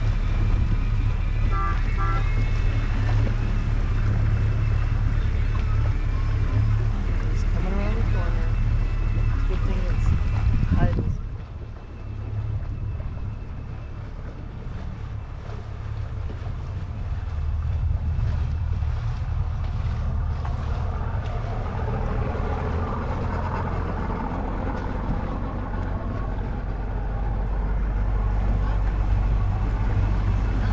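Motorboat engine running steadily under way, with wind and water noise on the microphone. About eleven seconds in the wind noise drops away sharply and it gets quieter, leaving mostly the engine's low drone, which grows louder again towards the end.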